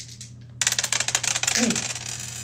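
Dice rattling and clattering in a rapid run of small clicks, starting about half a second in and running on to the end, as a roll is shot in a street-craps game.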